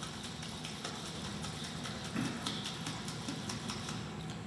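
Water and calcium hydroxide powder being shaken hard in a capped plastic juice bottle: a quick, rhythmic sloshing, several strokes a second. The powder is mixing into the water to form the milky suspension that becomes limewater.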